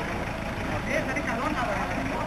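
A bus engine running at low revs, a steady low rumble, with people's voices in the street around it.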